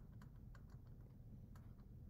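Faint, irregular clicks and taps, about three or four a second, from a pen-input device as an equation is hand-written on a computer screen; otherwise near silence.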